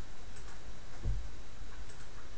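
A few faint computer-mouse clicks over steady background hiss, with a soft low thump about a second in.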